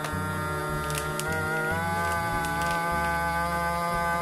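SilverCrest vacuum sealer's pump motor running with a steady hum, drawing the air out of the bag before sealing; its pitch lifts slightly about two seconds in.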